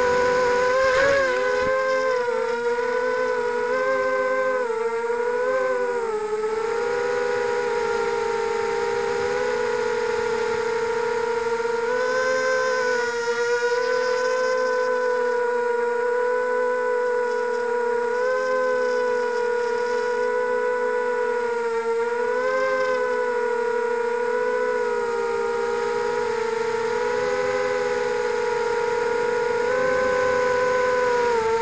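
Brushless 2204 motors and propellers of a small RC multirotor whining steadily, heard from the onboard camera, the pitch dipping and rising a little as the throttle shifts, most noticeably in the first few seconds.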